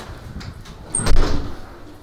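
A door, with a brief high squeak and then a thud about a second in.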